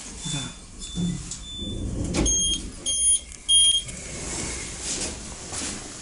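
A few faint short electronic beeps about a second in. Then a dull thump, then three louder, high electronic beeps a little over half a second apart.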